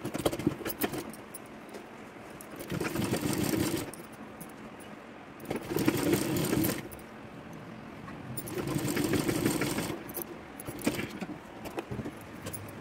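Domestic sewing machine stitching in three short runs of about a second and a half each, with small clicks and fabric rustle in between as the cloth is gathered and repositioned under the presser foot.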